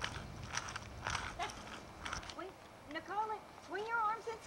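Sharp clicks and scuffs of a child's roller skates on a concrete driveway, then from about halfway through a small child's voice in short calls that rise and fall in pitch.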